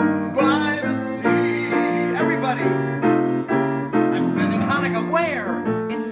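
Grand piano playing a lively song accompaniment, with a man's voice singing over it at moments.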